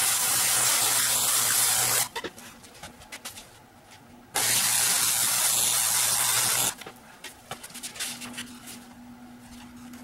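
Arc welder running two short weld passes on the steel tabs of a fuel-cell tray, each a steady loud hiss lasting about two and a half seconds. The first stops about two seconds in, and the second starts just after four seconds and stops near seven seconds, leaving a low hum and small handling noises.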